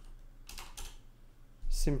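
Computer keyboard keystrokes: a few short, light key clicks in the first second as a file name is typed.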